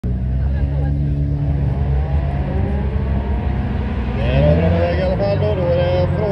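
An engine runs steadily at a low pitch, then revs up with a rising pitch about four seconds in. A voice talks over it near the end.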